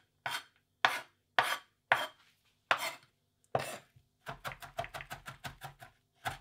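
A wide-bladed kitchen knife chopping garlic on a wooden cutting board: six separate chops about half a second apart, then from about four seconds in a quick, even run of about six chops a second as the garlic is minced.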